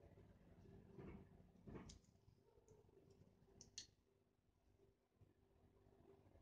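Near silence: faint steady room hum, with two soft rustles about a second and two seconds in and a couple of light clicks a little past the middle, small handling noises while paintbrushes are being worked with.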